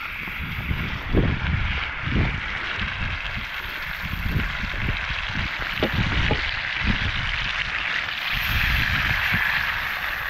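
Raw steak sizzling in a cast iron skillet over a campfire: a steady frying hiss, with irregular low rumbles underneath.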